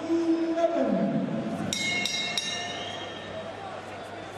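Boxing ring bell struck about three times in quick succession and ringing on, signalling the start of the 11th round.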